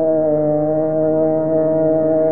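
A male Hindustani classical singer holding one long, steady note in raga Bihagda, just after a wavering, ornamented approach to it.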